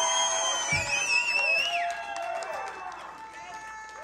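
Held electric guitar and bass notes ringing out in a break of a live heavy metal song, with high whistle-like tones sliding up and down and fading away, and voices shouting from the audience.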